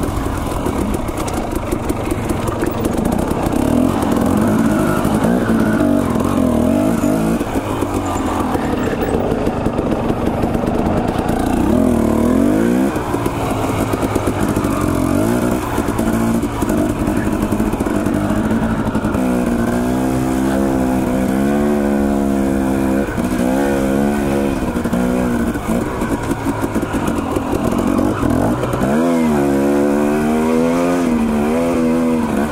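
Dirt bike engine running under way, its pitch rising and falling over and over as the throttle is opened and closed, the swings most marked in the second half.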